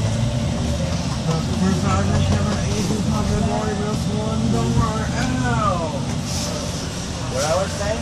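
Steady low rumble of a motor vehicle on the move, with indistinct voices talking over it a couple of times.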